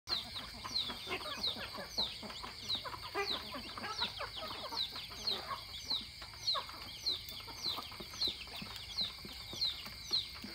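Domestic chickens clucking, with a short high falling chirp repeated about every two-thirds of a second over a steady high drone.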